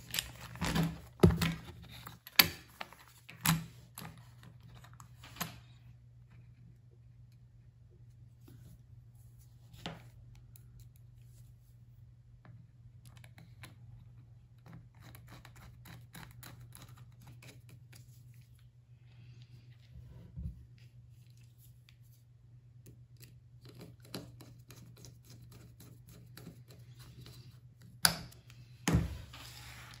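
Small screws being driven with a screwdriver to mount a caster wheel on an acrylic robot chassis plate: scattered light clicks, taps and scrapes of the tool, screws and plastic parts. They are busiest in the first few seconds, with a couple of louder knocks near the end, over a faint steady low hum.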